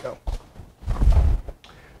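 A few low, muffled thuds and rumbles of movement: footsteps and bumps of the camera being carried, with a short knock near the end.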